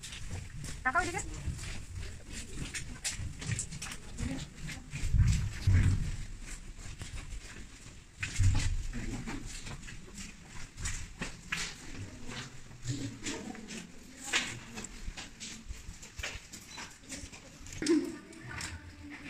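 Footsteps and handling knocks from walking through a narrow cave passage, with many short clicks and several heavy low thumps, and indistinct voices of other people in the background.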